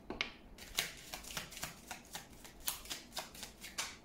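A small oracle card deck being shuffled by hand: a quick, irregular run of crisp card clicks and flicks.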